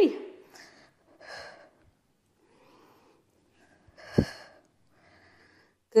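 A woman breathing hard during exercise: a few short, breathy exhales, the strongest a sharp puff about four seconds in.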